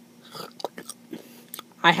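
A pause in speech filled with a few faint, scattered clicks and smacking mouth noises, then a man's voice starts again near the end.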